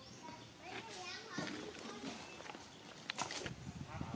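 Voices in the background, a string of short calls or words with bending pitch, and a brief cluster of sharp clicks about three seconds in.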